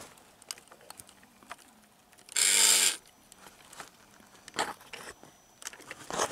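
The gear mechanism of a Halloween vampire animatronic clicking as it moves between its recorded lines. A short, loud, hissy burst comes about two and a half seconds in.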